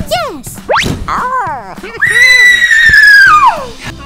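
Cartoon-style boing and slide-whistle sound effects: a quick falling sweep, a rising sweep and a few short bouncing tones. Then a loud, long, high squeal starts about halfway through and drops away in pitch before the end.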